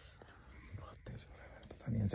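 A man's voice, faint and whispered, too low to make out words, with a small click about a second in.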